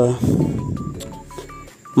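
A man's hesitant 'uh' trails off, followed by a soft rustle that fades over a second or so. Faint short high beeps come and go in the background.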